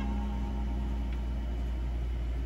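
Steady low hum of a VHS tape playing through a TV, with one low held musical note fading away over the first second and a half as the music ends.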